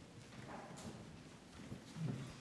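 A few faint footsteps on a hard floor.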